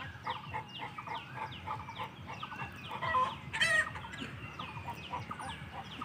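Chickens calling: a steady run of short, falling calls, about three a second, with one louder call about three and a half seconds in.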